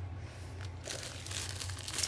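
Black plastic packaging crinkling as it is picked up and handled, starting about a second in.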